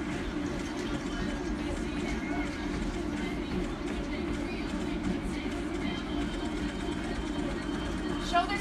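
Two motorized treadmills running steadily under jogging runners, a continuous even hum and belt rumble with the thud of footfalls.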